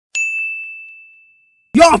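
A single high, bell-like ding, struck once and ringing out on one steady pitch, fading away over about a second and a half. A man's shouting voice cuts in near the end.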